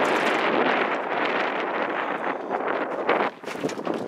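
Wind buffeting the microphone in a steady, gusting rush, with a few light knocks and rattles near the end as a slide-out tray of pots and pans is handled.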